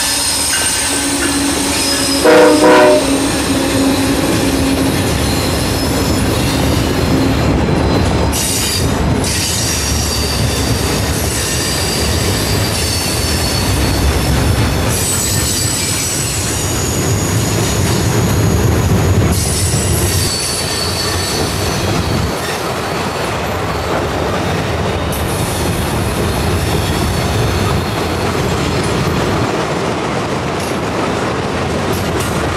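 Freight train's empty gondola cars rolling past close by: a steady heavy rumble of wheels on rail, with thin high-pitched wheel squeal coming and going. A short, very loud horn note sounds about two seconds in.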